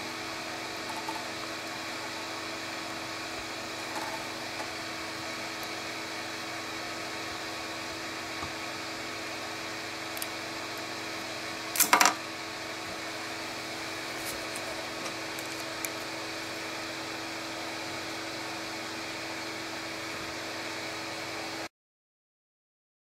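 A 3D printer's fans hum steadily, with a few faint ticks as a wooden stick picks at the print. About twelve seconds in, a short, loud clatter as the printed part is knocked over onto the metal build plate. The sound cuts off abruptly near the end.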